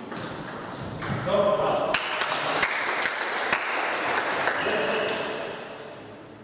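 Celluloid table tennis ball struck by rubber-faced bats and bouncing on the table during a rally, a few sharp clicks in the middle, over loud voices.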